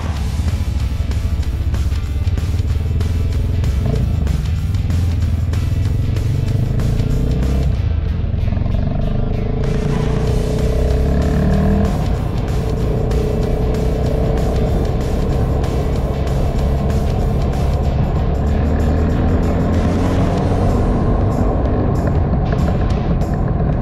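Motorcycle engine running while riding in traffic, its pitch rising and falling with the throttle over a heavy low rumble of wind and road noise on a helmet-mounted camera, with music playing over it.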